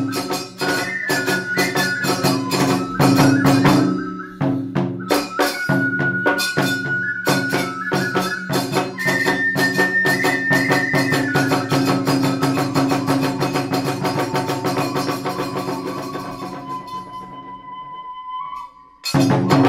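Iwami kagura hayashi music: rapid drum strokes and clashing hand cymbals (tebyoshi) under a bamboo flute (fue) playing long held and sliding notes. The strokes thin out and the playing grows quieter toward the end.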